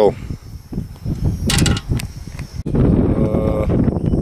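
Wind blowing on the camera microphone, a dense low noise that starts suddenly about two and a half seconds in. Before it there are only quiet scattered knocks and a brief hiss.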